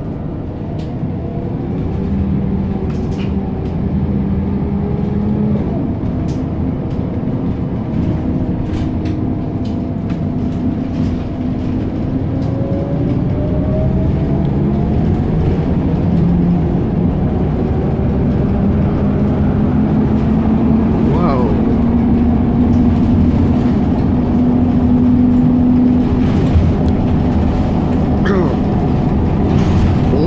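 Inside a moving bus: a steady low rumble of the engine and running gear, with engine notes that glide slowly upward as the bus gathers speed, growing a little louder towards the end.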